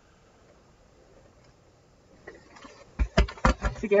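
A faint fabric rustle, then about three seconds in a quick cluster of sharp clicks and knocks as a steam iron is lifted off a pressing mat and set down after pressing a fabric strip.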